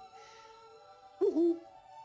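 Soft orchestral film score, broken a little over a second in by one short, loud animal call whose pitch bends down and back up.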